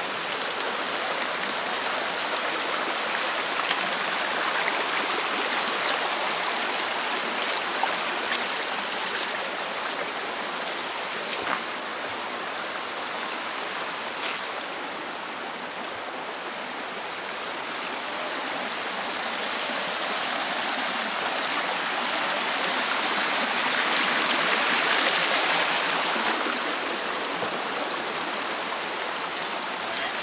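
Shallow forest stream running over stones, a steady rush of water that dips a little in the middle and swells loudest about three-quarters of the way through.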